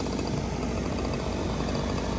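Steady patter of a light rain shower starting, over the low running hum of a lawn mower engine.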